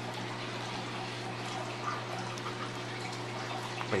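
Steady background hum with an even hiss and no speech: room noise from an electrical or mechanical source running at a constant level.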